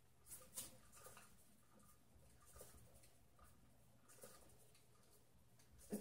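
Near silence: a hand-spun lazy Susan turning on its bearings, with a few faint soft clicks and rubs over a low steady hum.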